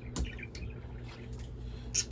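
Pet birds chirping faintly in the background over a steady low hum from a running ceiling fan, with one brief knock just after the start.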